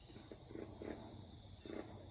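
Faint, distant animal calls, a few short calls spaced irregularly, over a low steady outdoor rumble.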